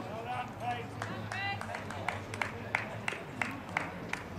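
A few voices calling out, then one or a few people clapping at a steady pace of about three claps a second.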